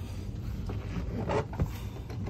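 Steady low rumble with a short knock about one and a half seconds in, as a boat's console seat is worked open to reach the storage beneath it.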